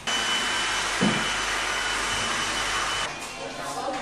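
Hand-held hair dryer running at full blast: a steady loud hiss with a thin high whine, which cuts off suddenly about three seconds in.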